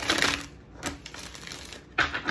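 A deck of tarot cards being shuffled by hand: a quick rippling burst of flicking cards in the first half second, then softer rustling and clicking, and another short burst at the end.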